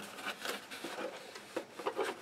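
Cardboard rustling with light, irregular knocks as someone rummages inside an open cardboard box.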